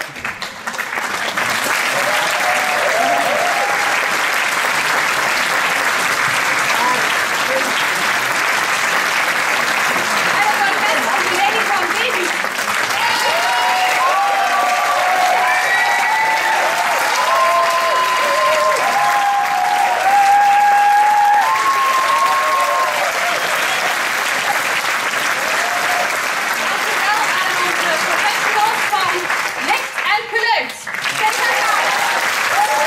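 Theatre audience applauding steadily and loudly during a curtain call, with some voices calling out from the crowd midway through.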